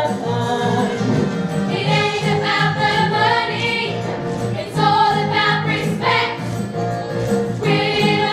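A chorus of mostly female voices singing a musical-theatre number over band accompaniment with a steady beat, the sung phrases coming in loud waves a few seconds apart.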